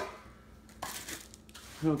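Faint handling sounds of boxed cookware: a light clink of a metal pan about a second in among soft packaging noises, then a man's voice starts near the end.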